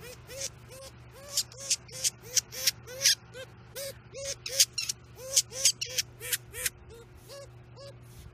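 Weasel giving a rapid series of short squeaky chirps, about three a second.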